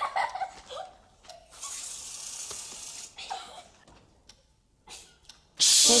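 A can of aerosol whipped cream spraying onto a girl's head in a hiss lasting about a second and a half, after some brief laughter. Near the end, a loud shush.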